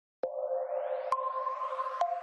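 Short electronic outro jingle starting a moment in: held synth tones that step to new, higher notes, with rising swooshes sweeping up behind them.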